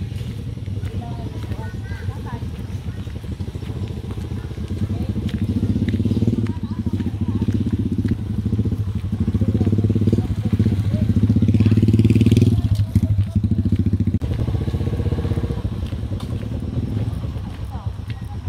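Small motorcycle engine running at low speed, growing louder as it comes near, loudest about twelve seconds in, then fading away.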